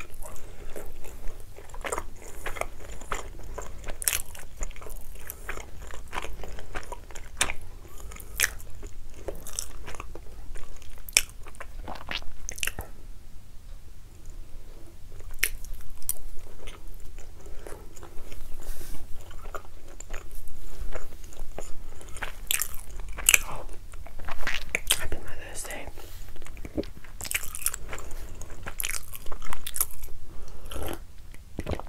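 Close-miked chewing of soft ravioli: wet mouth sounds with many sharp clicks and smacks.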